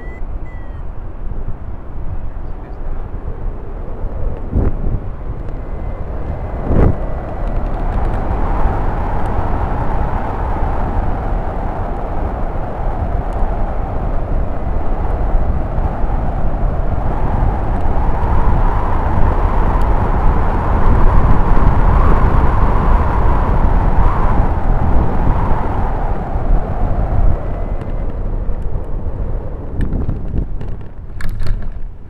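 Rushing airflow and wind buffeting on a camera mounted on a rigid-wing hang glider's keel tube in gliding flight: a steady low rumble with a hissing band above it that swells several seconds in, peaks past the middle, and fades near the end. A single sharp knock is heard about seven seconds in.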